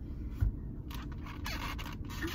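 Handling noise: a low thump about half a second in, then about a second of scraping and rustling as things are moved about, over a low steady rumble.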